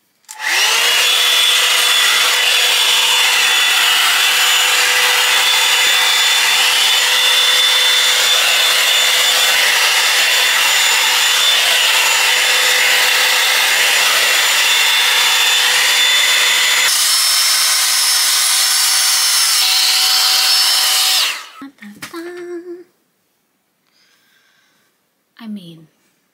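Bondi Boost blowout brush, a hot-air styling brush, running loudly: its motor spins up with a rising whine just after the start, then blows steadily with a rush of air and a high whine. About seventeen seconds in the whine jumps to a higher pitch, and the brush cuts off a few seconds before the end.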